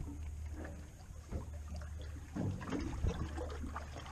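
Steady low rumble of wind on the microphone on an open boat at sea, with faint irregular sounds of water against the hull.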